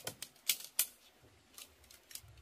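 Tarp pole sections clicking and clacking as they are fitted together: a handful of sharp clicks, the two loudest close together about half a second in, with fainter ones later.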